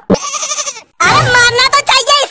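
A short, wavering, bleat-like cry lasting under a second, then a cartoon character's voice speaking from about halfway through.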